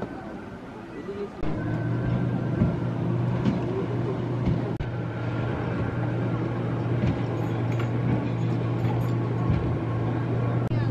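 Motorboat engine droning steadily out on the water, starting about a second and a half in.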